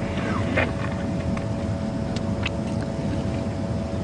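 A lioness feeding on buffalo meat, slicing it with her carnassial teeth: a few faint crunches over a steady low engine rumble.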